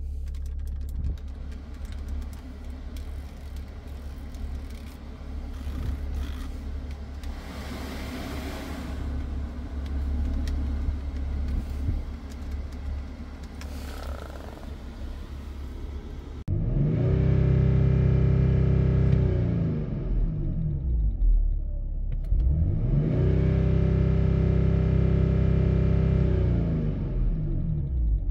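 BMW X5's straight-six diesel engine idling, heard from inside the cabin. Past the halfway point it is revved twice, each time rising over about a second, held for a few seconds, then falling back to idle.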